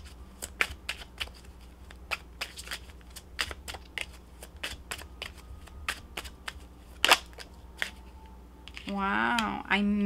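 Oracle cards being shuffled by hand: an irregular stream of crisp card clicks, a few a second, with one louder snap about seven seconds in.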